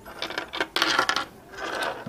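Lavalier microphones, their metal jack plugs and clips clinking and rattling against each other and the wooden desk as they are laid out, in a few quick clusters of light clicks.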